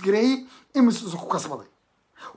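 A man speaking in two short bursts, then a brief pause near the end.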